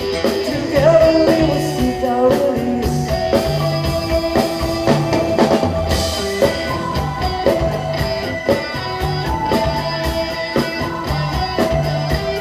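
Live rock band playing amplified: keyboard, electric guitar, bass guitar and drum kit keeping a steady beat, with a short sung phrase near the start.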